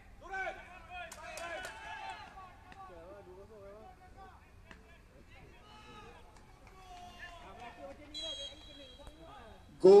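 Players' shouts and calls carrying across a football pitch in an almost empty stadium, scattered and overlapping, with a few sharp knocks about a second in and a brief high steady whistle tone about eight seconds in.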